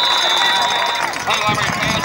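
A referee's whistle sounding one long, steady blast that stops about a second in, signalling the play dead after a tackle. Underneath, a crowd of spectators and players shouting and cheering.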